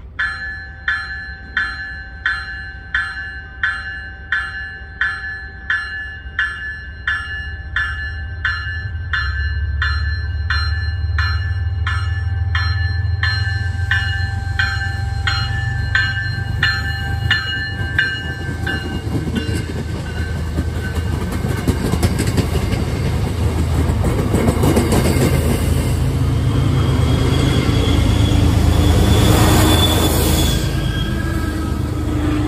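MBTA push-pull commuter train arriving, cab car first: a warning bell rings about twice a second for the first half, while the train's low rumble grows steadily louder. The rumble peaks near the end as the cars and then the diesel locomotive pass close by.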